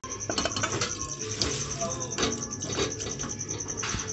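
Metal utensils clinking and scraping against a metal wok and pot as thick curry is tipped and scraped from one into the other, a string of separate clinks a second or so apart.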